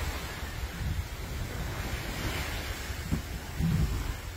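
Steady wash of small waves on a sandy shore, with wind rumbling on the microphone.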